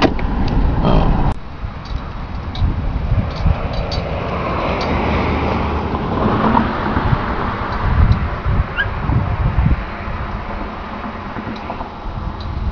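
A vehicle driving over a rough road surface, heard from inside the cab, breaks off abruptly about a second in. Then wind buffets the microphone outdoors in uneven gusts over a soft, steady rush.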